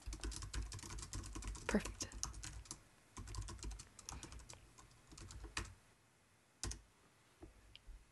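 Typing on a computer keyboard: a quick run of keystrokes for about six seconds, then a couple of single clicks near the end.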